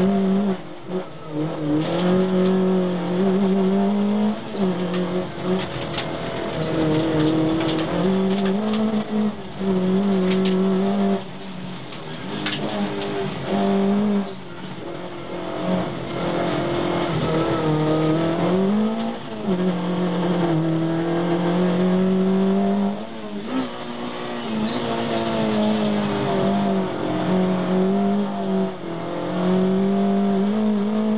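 Škoda Favorit 1400's four-cylinder engine at racing revs, heard from inside the cabin. The engine note is held high, drops briefly several times as the throttle is lifted or a gear is changed, then climbs again.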